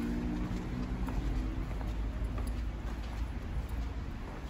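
Footsteps on stone paving, a few faint clicks over a steady low outdoor rumble. A low steady hum fades out in the first second and a half.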